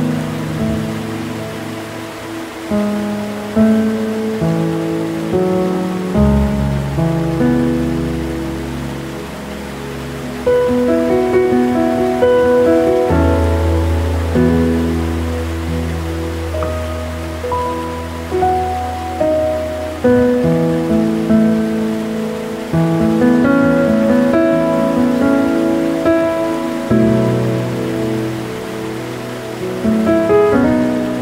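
Slow, gentle piano music, its notes struck one after another over long-held low bass notes, mixed over a steady rushing hiss of waterfall water.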